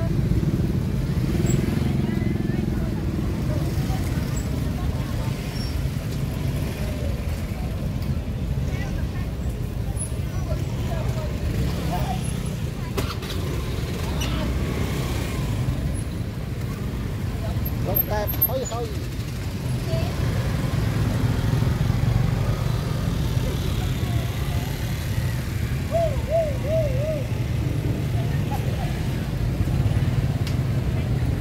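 Busy outdoor market ambience: a continuous low rumble of motorbike and traffic engines, with scattered snatches of distant voices and chatter.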